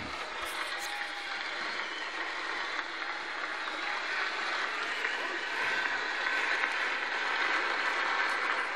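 Large congregation applauding, a steady dense clapping that grows a little louder toward the end.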